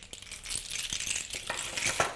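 Many small seashells clinking and rattling together as they are handled, a dense clatter that grows louder toward the end.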